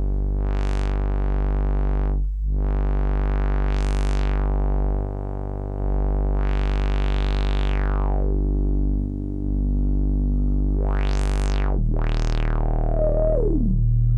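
Novation Circuit Mono Station analogue synth holding one low bass note through its filter with the overdrive turned up, the cutoff swept open and shut five times. Near the end a resonant peak glides down in pitch.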